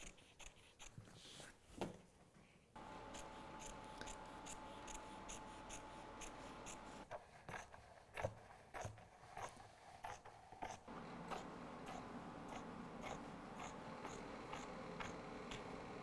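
Fabric scissors cutting along the edge of fabric laminated to PVC lampshade panel: faint, repeated snips and clicks of the blades.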